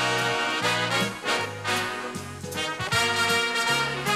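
Swing big band playing a bouncy jazz tune: trumpet and brass in front over a stepping bass line and drums.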